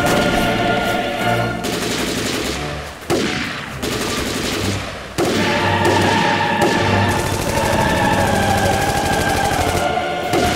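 Rapid, dense battle gunfire from many rifles, layered over a dramatic music score with long held notes. The gunfire drops away sharply about three seconds in and again about five seconds in, each time coming straight back at full level.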